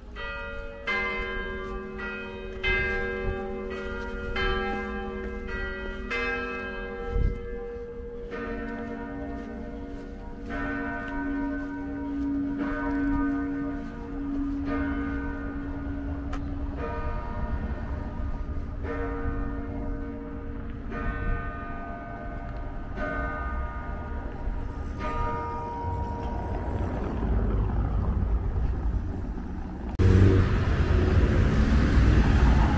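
Church tower bells striking. A higher bell rings about once a second for the first eight seconds, then a deeper bell rings about every two seconds, each stroke ringing on. Street traffic grows louder near the end.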